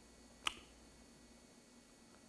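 Near silence of a quiet room, broken once about half a second in by a single short, sharp click.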